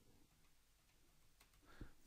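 Near silence: faint room tone, with perhaps one very faint click.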